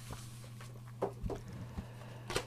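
Faint handling sounds of a paper booklet being flicked through, with a few soft taps about a second in and near the end, over a steady low hum.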